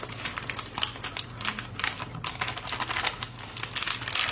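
Frozen whole-kernel corn poured from a plastic bag into a filled glass baking dish, the kernels falling as a rapid, irregular patter of small clicks.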